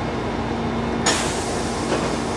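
Interior of a stopped Meitetsu electric train: a steady hum with a faint constant tone, then about halfway through a sudden loud hiss of compressed air that fades away, as from the train's air-powered doors or brakes.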